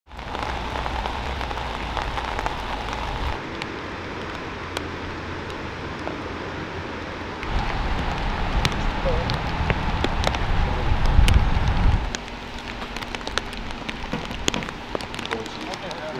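Rain falling steadily, a patter with many separate drops ticking on a canopy. A low rumble runs under it, loudest from about seven to twelve seconds in, where it cuts off suddenly.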